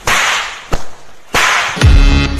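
Two sharp whooshing swishes of a mop swung through the air at a man's head, about a second and a half apart, with a short crack between them. Music with a heavy beat comes in just at the end.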